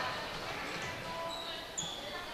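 Indoor basketball game sound: a basketball being dribbled on the hardwood court over a steady murmur of crowd chatter, with a few brief high-pitched squeaks of players' shoes on the floor near the end.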